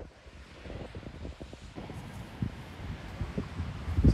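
Wind buffeting a phone's microphone: an uneven low rumble that swells and drops in small gusts.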